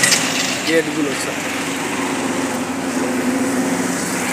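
Small motorbike engine running steadily close by, a low even hum, with a man calling out a single word about a second in.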